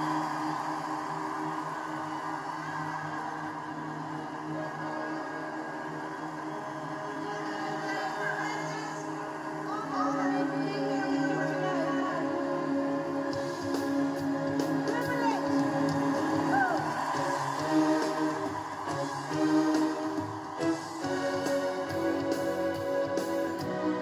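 A live band's intro music starts with sustained chords while a crowd cheers over it. About halfway through it grows louder and a beat comes in, heard as it plays from a television.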